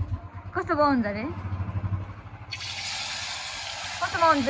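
Small fish frying in hot oil in a wok over a wood fire: a steady sizzle starts suddenly about halfway through and keeps going. A low rumble runs under the first half, with a short spoken remark near the start.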